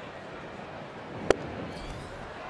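A 96 mph fastball popping into the catcher's mitt: one sharp crack a little over a second in, over steady ballpark crowd noise.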